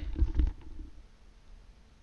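A brief low rumble with a few faint clicks in the first half second, then only a faint hiss.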